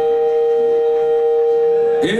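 Electric stage keyboard holding a steady, unchanging organ-like tone, the other instruments silent under it.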